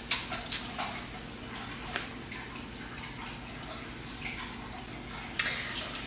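A few faint, brief rustles and clicks over quiet room tone, most in the first second, with one more about two seconds in and one near the end.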